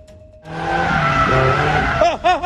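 Van tyres squealing and skidding on asphalt as the van is thrown through a hard turn, starting suddenly about half a second in and running loud and steady.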